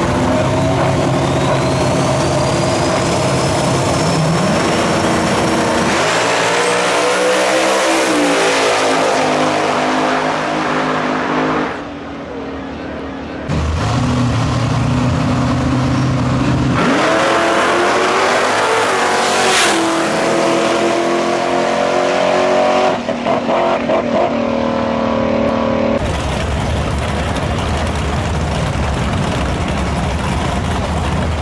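Drag cars running at the starting line, then launching and accelerating hard down the strip twice, about 6 and 17 seconds in. Each time the engine note climbs steeply and fades as the cars pull away. Near the end, the next pair of cars sits running at the line.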